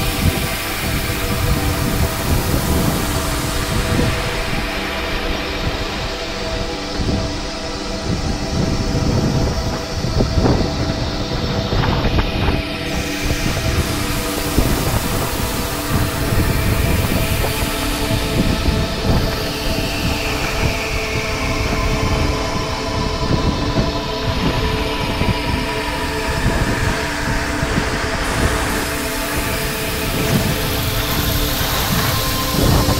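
A snowboard sliding and scraping over hard-packed snow, with wind buffeting the action camera's microphone. It makes a continuous loud rushing, heavy in the low end.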